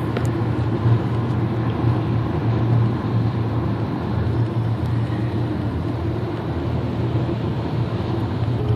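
Steady road noise heard inside a car's cabin as it cruises on a freeway: a low drone from the tyres and engine.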